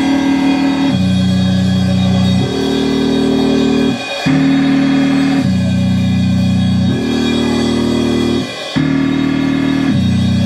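Live rock band playing an instrumental passage: electric guitars and drum kit under loud, sustained low chords that change about every one and a half seconds.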